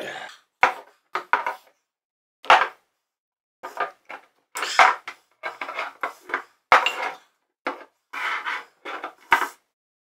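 Glass hot sauce bottles being picked up and set down on a wooden table, knocking against the wood and clinking against each other in a long series of short, sharp knocks with brief pauses between them.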